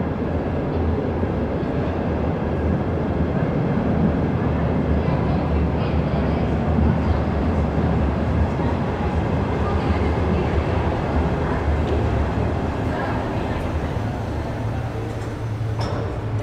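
Berlin U-Bahn Class D57 train running into an underground station. It makes a steady low rumble of wheels and motors on the track, which eases slightly as the train slows to a stop near the end.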